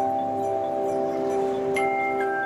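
Aluminium handchimes played by an ensemble: several notes ring and sustain together in a chord. A new, higher chime is struck near the end.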